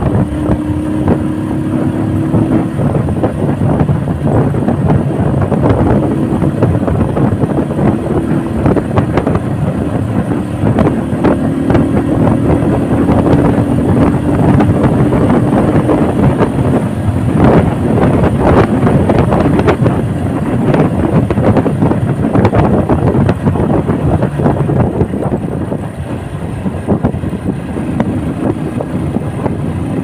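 Motorcycle engine running while the bike is ridden along a road, its pitch shifting a little as the throttle changes, with wind rushing over the microphone.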